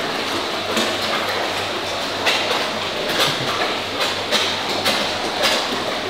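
A crowd of koi thrashing at the surface of a pond, a continuous rush of churned, splashing water with several sharper splashes scattered through it.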